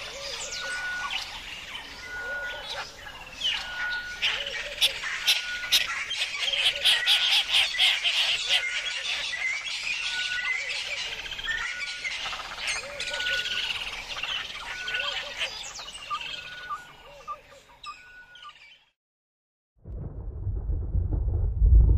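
A chorus of many birds chirping and calling, with one short steady note repeating about every second and a half through it. It fades out near the end.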